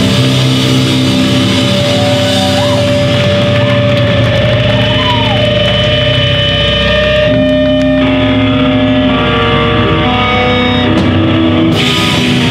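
Hardcore band playing live: loud distorted electric guitars and bass over drums, in a passage of long held notes. One guitar note is held for several seconds and bends upward twice, and a cymbal crash comes near the end.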